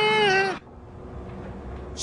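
A voice singing a long, wavering high note that breaks off about half a second in, leaving only a faint low hum.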